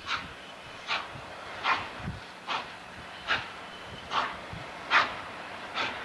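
Norfolk & Western J-class 611, a 4-8-4 steam locomotive, working at slow speed: sharp exhaust chuffs, evenly spaced at a slow beat of about one every 0.8 seconds, eight in all.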